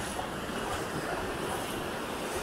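Sea surf: small waves breaking and washing in over the shallows, a steady rushing sound.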